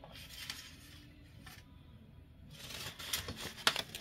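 Faint rustling of paper and a bag being handled, quiet at first, with a few sharper crinkles in the last second.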